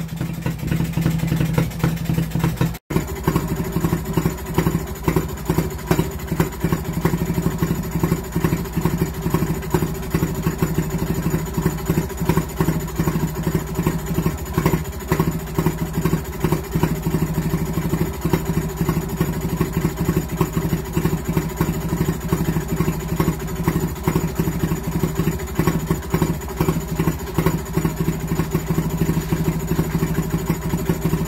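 1935 Villiers WX11 single-cylinder stationary engine running steadily, an even rapid beat of firing strokes at a constant speed. The sound cuts out for an instant about three seconds in, then the same steady running carries on.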